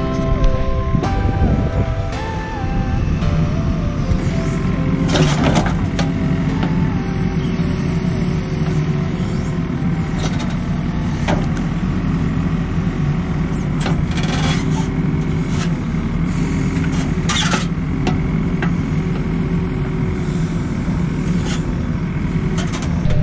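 JCB mini excavator's diesel engine running steadily as its bucket pushes soil back around a buried water pipe, with occasional short knocks and scrapes of the bucket on earth.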